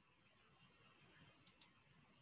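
Near silence broken by two quick computer mouse clicks in a row about one and a half seconds in.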